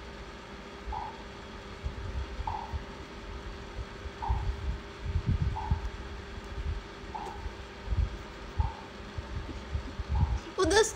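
Irregular low thumps and rumbles, as of a phone microphone being handled, over a faint steady hum. Six short, soft tones sound about every one and a half seconds.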